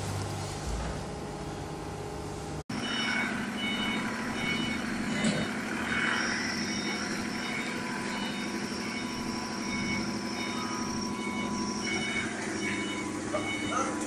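Hydraulic baling press running: its electric motor and hydraulic pump give a steady machine hum. About three seconds in the sound cuts off for an instant, then comes back as a second baler's hum, a little higher, with a repeating high beep-like tone over it.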